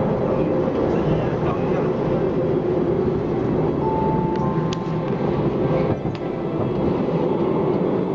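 Cable car station machinery running with a steady rumble, and a few held tones about four seconds in.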